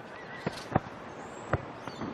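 Cricket ground ambience on the broadcast sound: a low, steady background noise broken by a few sharp knocks, about half a second, three-quarters of a second and a second and a half in.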